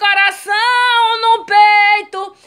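A woman singing a gospel hymn with no accompaniment, holding two long notes with a short break between them.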